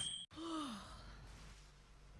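A person's sigh, falling in pitch and lasting about half a second, shortly after the start, followed by faint hiss.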